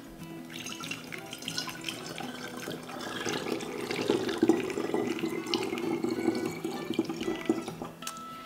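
Sugar water poured from a small stainless saucepan through a funnel into a glass spray bottle: a steady trickle of liquid filling the bottle. It grows louder about halfway through, then eases off near the end.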